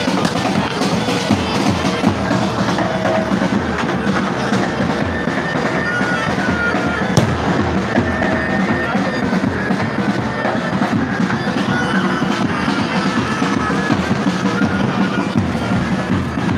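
A pipe band of bagpipes and drums playing: the pipes' sustained drone and chanter melody over beating drums.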